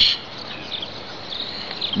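Steady outdoor background hiss with insects chirping.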